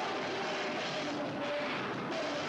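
Hardcore punk band playing live at full volume, heard as a dense, steady wall of distorted guitar sound with no break.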